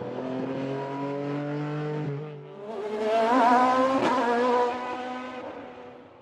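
Peugeot 208 Rally4 rally car's turbocharged three-cylinder engine running under load on track: the note holds steady for about two seconds, eases briefly, then comes back louder with its pitch wavering, with one sharp crack about four seconds in, before fading away near the end.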